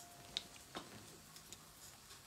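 Very quiet jazz background music: a held note dies away in the first moment, followed by a couple of small clicks.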